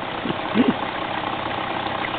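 Dirt bike engine idling steadily, with a brief voice about half a second in.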